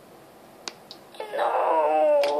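A child's voice giving a long, wavering playacted wail, starting a little past a second in. A couple of faint clicks come before it.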